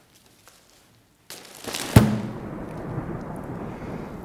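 A clear plastic umbrella rustles and then snaps open with one sharp, loud pop about two seconds in. A steady hiss of rain follows.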